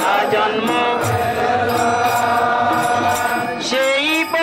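Group devotional kirtan: voices chanting a held, wavering melody over a steady beat. A louder new sung phrase comes in near the end.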